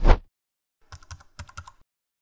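A short whoosh transition effect with a low thud, the loudest sound, then about a second in a quick run of computer-keyboard typing clicks, about eight keystrokes, as a name is typed into a search bar.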